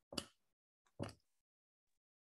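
Two faint short clicks about a second apart, on an otherwise near-silent line.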